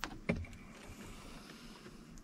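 Two light knocks about a third of a second apart from equipment being handled, then faint steady background hiss; neither pump is running yet.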